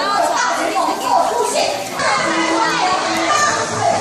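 Lively crowd of children and adults, many overlapping voices calling and chattering, with children's high voices standing out.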